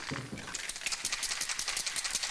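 Aerosol spray paint can spraying onto a wall: a hiss broken into rapid pulses, with a quick rattling running through it.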